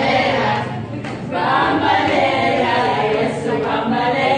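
A group of people singing together without accompaniment, many voices at once, with a brief break between phrases about a second in.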